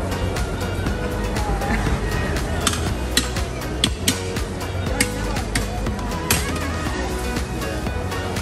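Background music with a steady beat, over which a Turkish ice cream vendor's long metal paddle clanks sharply against the metal freezer lids about seven times at an uneven pace, part of the stretchy-ice-cream teasing routine.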